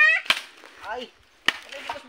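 A machete chopping into a wooden branch: two sharp strikes about a second apart.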